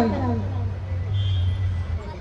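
A woman's amplified voice trails off with a falling pitch at the very start, leaving a steady low hum in the background.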